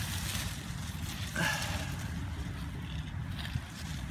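Steady low outdoor rumble with rustling of leaves as a hand pushes through the foliage of a fruit tree, and a brief higher sound about a second and a half in.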